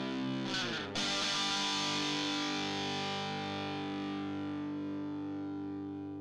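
Closing music: a distorted electric guitar chord, with a new chord struck about a second in and left ringing, slowly fading.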